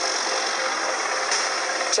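Steady noise of an engine running, with a faint even hum and no change in level.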